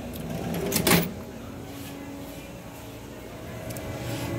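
A short sliding rush that rises to a clunk about a second in, then a steady low hum.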